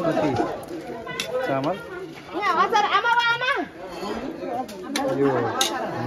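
Several people talking over one another in chatter, with one higher voice calling out about halfway.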